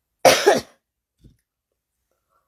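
A woman coughing into her fist: two quick coughs run together in one short burst near the start.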